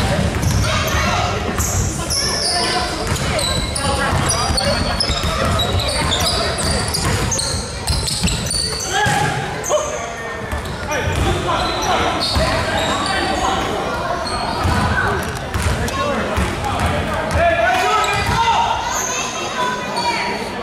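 Basketball being bounced on a hard gym floor, the thuds echoing in a large hall over indistinct voices.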